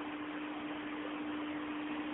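Background noise of a speech recording during a pause: a steady hiss with a constant hum tone underneath.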